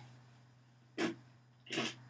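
A child making two short breath sounds, one about a second in and a slightly longer one near the end, over a faint steady low hum.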